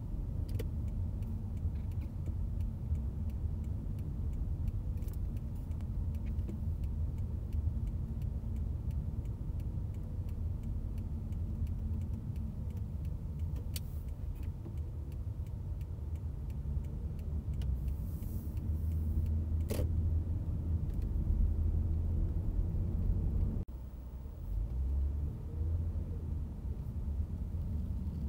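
Steady low road and engine rumble of a car driving, heard from inside the cabin, with a few faint clicks and one sharp click. Near the end the sound drops off abruptly for a moment, then the rumble returns.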